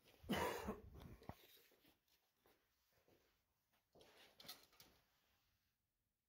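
A person coughing once, about half a second in, followed by a fainter, shorter sound around four to five seconds in.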